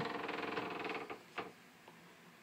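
A closet door's hinge creaking in a rapid, rattly run for about a second as the door swings open, followed by a single short knock.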